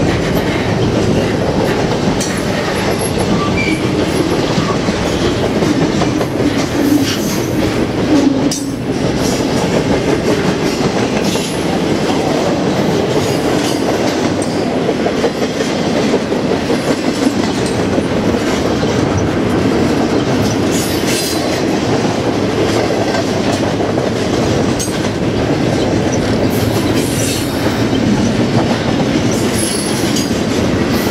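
Double-stack intermodal freight train's loaded well cars rolling steadily past over a grade crossing: a continuous loud rumble of steel wheels on rail with clattering over the track.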